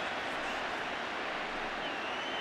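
Steady noise of a large football stadium crowd.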